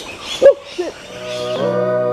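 A man's short vocal sound about half a second in, the loudest moment, then outro music fading in with steady held chords.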